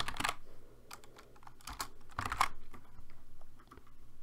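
Typing on a computer keyboard: scattered keystrokes, with a louder cluster of key presses about two seconds in.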